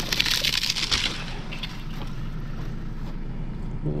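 Dry twigs and brittle dead brush crackling and snapping as a hand grabs and pulls at a dead branch, for about the first second. A steady low rumble runs underneath throughout.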